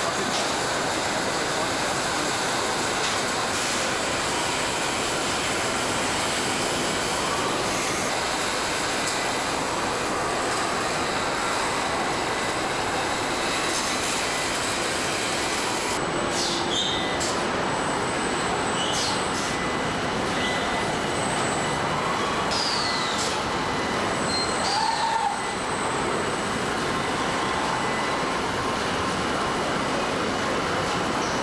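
Car assembly-line factory noise: a steady, dense machine din with a few short, high squeals and hisses in the second half.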